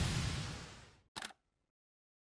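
Transition sound effect for a logo animation: a whoosh that fades out over about the first second, followed by a single short, sharp click.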